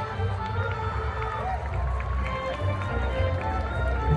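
High school marching band playing its field show: brass and winds hold sustained chords over heavy low bass from the amplified sideline pit.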